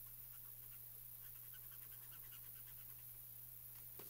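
Faint scratching of a marker nib on smooth Bristol paper: many quick, short colouring strokes, several a second, over a low steady hum.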